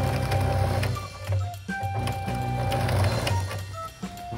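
Electric sewing machine stitching through a doubled patch on denim, its needle running in short runs, under background music with held notes.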